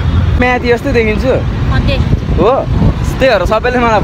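Speech: a young man talking, over a low steady rumble.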